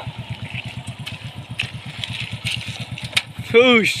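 Motorcycle engine idling with a steady, rapid low beat. A man's voice calls out near the end.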